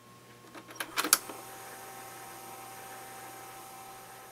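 Clicks of a Tascam four-track cassette recorder's transport keys being pressed, the two loudest close together about a second in, then the tape transport running with a steady faint hiss and hum.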